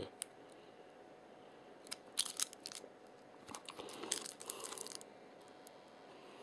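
A plastic drink cup crinkling and crackling as it is turned over in the hands, in two short spells about two and four seconds in.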